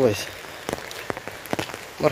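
Rain falling on an umbrella held overhead: a steady hiss with single drops ticking sharply on the canopy now and then.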